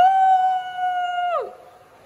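A woman's voice holding one long, high cry of joy on a single steady note. It swoops up into the note and drops away after about a second and a half.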